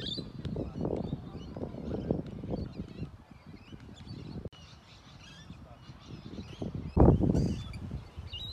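Outdoor ambience with birds chirping over an uneven low rumble. The background drops suddenly about halfway, and a loud low thump comes about seven seconds in.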